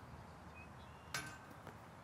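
A putted disc landing with a single sharp clack about a second in, followed by a brief ring and a softer tick, over faint outdoor background noise.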